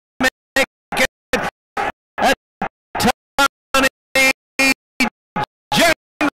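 A race caller's voice chopped into short fragments, about three a second, each broken off by dead silence: a stuttering audio dropout in the broadcast sound.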